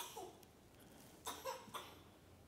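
Faint, short human vocal sounds from a listener in the congregation: a quick sound right at the start, then a cluster of short bursts a little over a second in, like coughs.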